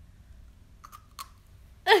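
Quiet mouth sounds of biting and chewing a piece of sour pickled mango, with two short soft clicks about a second in. A woman's voice starts loudly just before the end.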